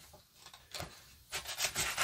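A pause, nearly silent at first; from about halfway through come a few short, faint rubbing noises.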